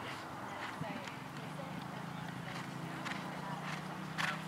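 Horse cantering on grass, its hoofbeats coming as faint, irregular knocks, with people talking in the background.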